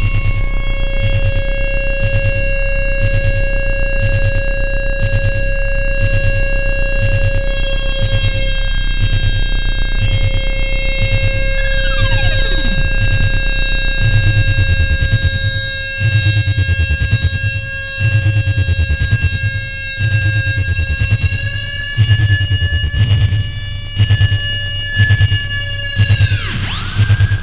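Experimental electronic drone and noise music: several steady synthesizer tones held over a fast-pulsing low rumble. About twelve seconds in a tone glides steeply downward. After that the low drone thins out, and the music pulses in swells with sharp clicks.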